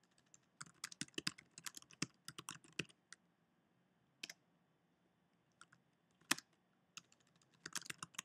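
Faint keystrokes on a computer keyboard as a command is typed: a quick run of typing in the first three seconds, a single key about four seconds in, a few scattered keys, then another short run near the end.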